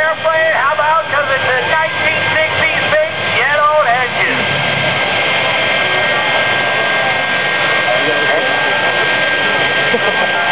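Jet truck's jet engine running with a steady high whine that comes in about four seconds in and holds at a constant level, over voices in the crowd.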